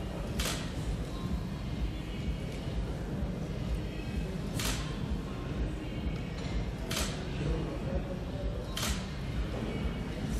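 Camera shutter clicks at a photo shoot: four single shots a few seconds apart, each a short sharp click, over a steady low room rumble.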